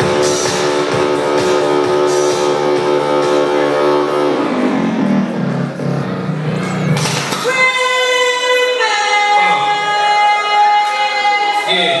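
Music from a DJ set, with the track jumping abruptly between sections. A held chord plays for about four seconds, then a lower passage; after a sharp hit near seven seconds comes a high, held vocal-like note that drops in pitch about a second later.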